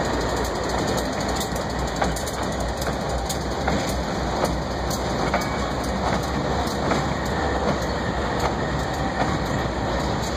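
Diesel freight locomotives rolling past, their wheels clicking and knocking irregularly on the rails over a steady low engine rumble.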